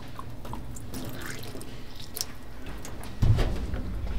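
Water poured from a plastic squeeze bottle splashing onto a small steel plate, rinsing off the vinegar it soaked in. A low thump about three seconds in.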